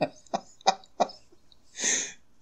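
A man laughing softly in four short bursts, then a breathy exhale near the end.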